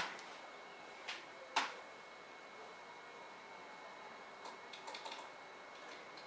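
Quiet room tone with two soft, brief rustles between one and two seconds in, and a few faint ticks later on, as long hair is rolled up by hand.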